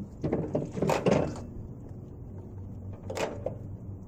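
Old John Deere two-cylinder tractor engine turned over by hand at its flywheel. There are irregular knocks in the first second or so and two short sharp puffs, about a second in and about three seconds in, and the engine does not catch.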